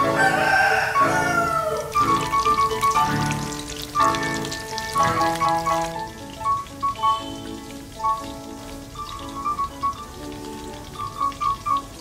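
Background music with a steady run of notes throughout. About half a second in, a rooster crows once, a call that falls in pitch over a second or so. Under the first half, deep-frying oil sizzles and crackles.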